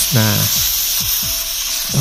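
R134a refrigerant gas hissing steadily out of the opened valve of a can tap screwed onto a refrigerant can: the hiss shows the tap's needle has pierced the can.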